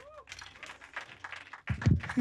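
Light, scattered hand-clapping from a small audience, followed near the end by a man beginning to speak.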